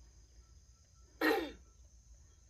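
A single short, breathy vocal sound falling in pitch, about a second in.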